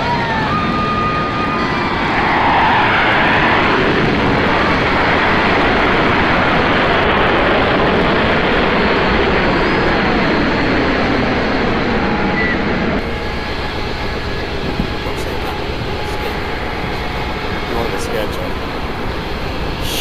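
Low-flying fighter jet passing, its engine noise swelling loud about two seconds in and holding steady for about ten seconds. It drops to a quieter, steady level about thirteen seconds in.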